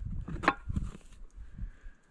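An old cardboard box being handled and its flaps pulled open, with rustling and scraping and one sharp crack about half a second in, as a can is lifted out.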